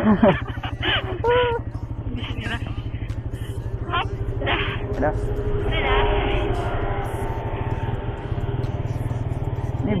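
Motorcycle engine running at low speed with a steady low pulse, a little louder about six seconds in.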